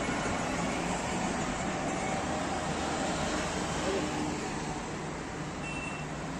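Steady roadside traffic noise, a continuous hum of the street with faint distant voices in it.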